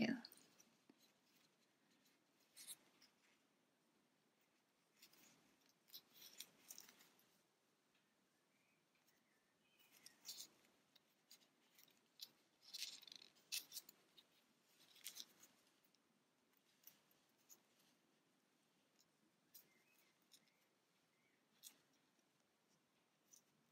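Faint, scattered clicks and rustles: hands are pressing plastic safety-eye washers onto their posts through a small crocheted amigurumi piece. They come a few seconds apart, with a busier patch in the middle.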